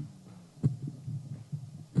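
Microphone handling noise: two dull thumps about a second and a half apart, with low rumble between them.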